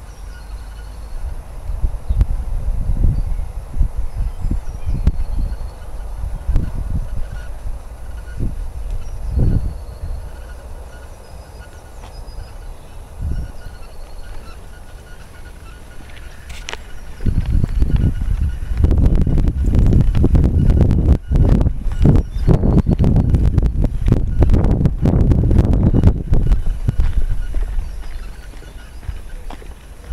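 Wind buffeting the camera's microphone in irregular gusts, a low rumble that is loudest over a long stretch from a little past halfway until near the end.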